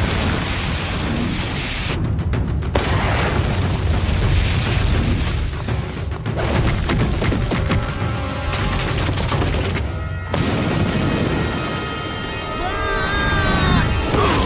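Cartoon fight sound effects over a dramatic score: a loud, sustained roar of a fire-breathing blast with a deep rumble, then a run of booms and crashes. There are brief lulls about 2, 6 and 10 seconds in.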